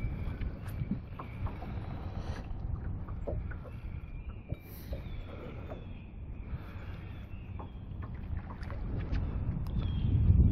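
Low, steady rumble of wind and water around a small fishing boat on a lake, with a faint thin high whine held through most of it and a few light scattered clicks.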